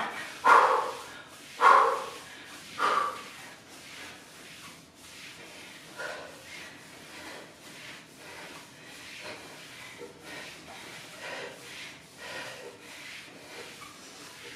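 Three short, loud vocal calls about a second apart from the woman working out, then only faint, irregular sounds of breathing and movement.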